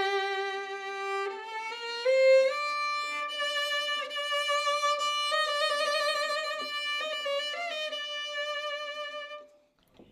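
Solo violin playing a slow phrase of long bowed notes that climbs step by step in pitch, with vibrato on the later held notes. The playing stops shortly before the end.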